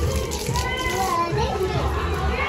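Voices of people and a young child playing and talking, with faint music behind them.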